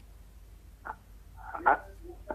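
Garbled, distorted fragments of a caller's voice over a poor telephone line: a short faint burst, then a louder croaking burst near the end.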